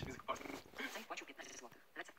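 Indistinct talking at moderate level, muffled as if playing from a computer's speakers.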